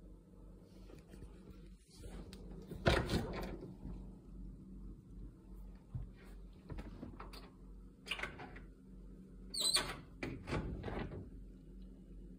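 A steady low hum, the bass-like thumping that is being tracked down, under several bursts of scraping and rustling. The loudest burst comes about three seconds in, and others come around eight and ten seconds in.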